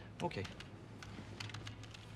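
Typing on a computer keyboard: a scattered run of light, quick key clicks.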